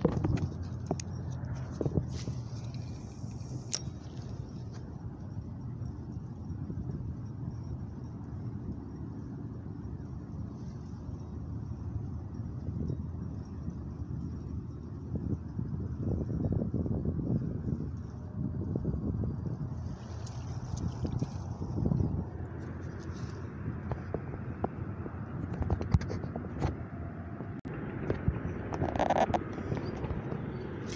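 Steady low outdoor rumble, with scattered light clicks and scrapes.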